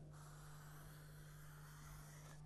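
Faint scratching of a marker drawing on a cardboard box, continuous and soft, over a steady low electrical hum.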